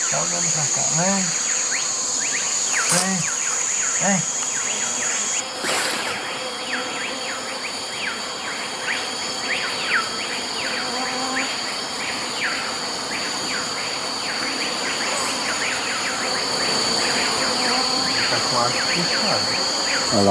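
Rainforest insects calling in a steady high chorus, with many short falling chirps throughout. Brief low voices come in the first few seconds, and a sharp noise about three seconds in and again about six seconds in.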